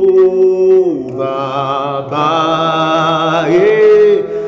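A man singing a slow praise song in long held notes, the pitch dipping about a second in, holding a wavering note, and rising again near the end.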